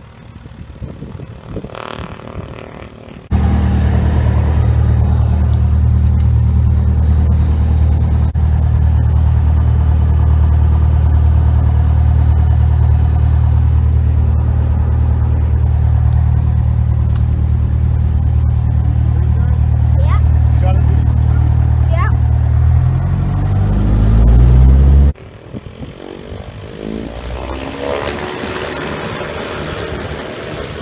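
Cessna 172K's four-cylinder Lycoming engine and propeller heard loud and steady from inside the cabin, rising in pitch a couple of seconds before it cuts off suddenly. Before and after that, the plane is heard much more faintly from outside, with a swell near the end.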